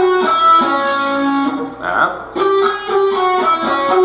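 Electric guitar playing fast single-note runs down the C-sharp Dorian scale in sequences of four, with an added tritone. It comes in two phrases with a short break about halfway.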